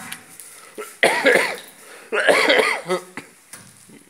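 A person coughing: two loud coughing bouts, the first about a second in and the second a second later.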